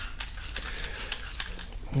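A trigger spray bottle squirting soapy water into a foam handlebar grip cover: a quick run of short spritzes and clicks.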